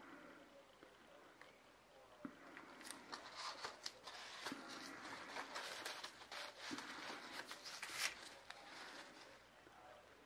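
Faint handling sounds: a paper towel crinkling and rustling in gloved hands, with scattered small clicks and taps. They are busiest from about three seconds in to about nine seconds in, with the loudest crackle shortly before the end.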